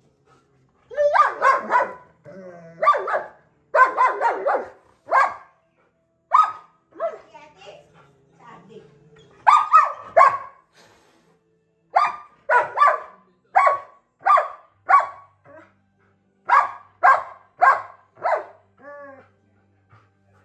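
German Shepherd puppy barking at a cat in short, high-pitched barks, in clusters with brief gaps. Near the middle and end they come as quick runs of single barks, about two a second.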